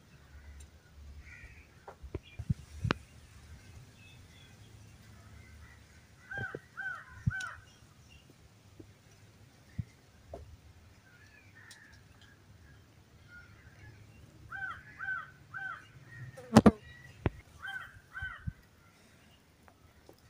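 A bird calling several times in quick runs of three short arched notes, with a few faint knocks and one sharp, loud knock about three-quarters of the way through.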